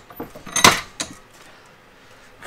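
Steel parts handled at a metal bench vise: a few light metallic clinks, then one sharp clank about two-thirds of a second in and a smaller knock around a second in.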